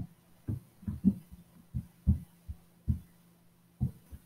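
Keys being typed on a computer keyboard: short, soft thumps at irregular intervals, about two a second, over a faint steady hum.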